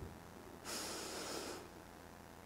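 A Quran reciter drawing a deep breath close to the microphone between recited phrases: a soft hiss of about a second, starting about half a second in.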